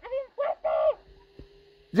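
A person's high-pitched voice giving three short vocal sounds in the first second, then near quiet with a faint steady tone.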